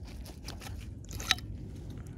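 Gloved hands handling a driveshaft and its removed rubber center support bearing: faint scattered clicks and crunches, with one sharper click past the middle, over a low steady rumble.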